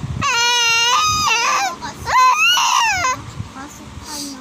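Three-month-old baby cooing and squealing: two long, high-pitched happy vocalizations, the first held level for about a second, the second starting about two seconds in and rising in pitch.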